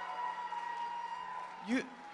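Audience applause and cheering in a large hall, dying away, with a single spoken word over a microphone near the end.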